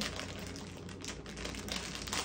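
Plastic candy bag crinkling as it is handled, a quiet run of small crackles and clicks.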